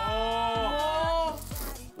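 Background music: a gliding melodic line over a repeating, falling bass note. About one and a half seconds in, the melody drops away and a short hissing noise is heard.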